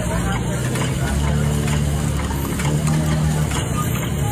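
Steady low motor hum, with people talking over it.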